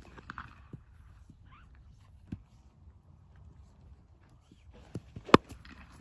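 A cricket bat striking the ball once with a sharp crack about five seconds in, after a few faint knocks.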